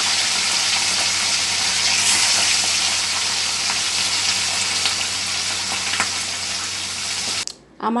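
Whole baacha fish sizzling as they fry in hot oil in a steel wok: a steady sizzle that cuts off suddenly near the end.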